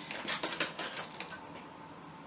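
Coil of gold-coloured jewelry wire being picked up, with a quick run of light metallic clicks and rattles that dies away after about a second and a half.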